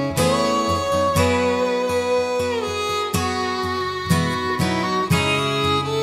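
Instrumental opening of an Irish folk ballad: acoustic guitar strummed in a steady rhythm under a fiddle playing the melody, sliding between held notes.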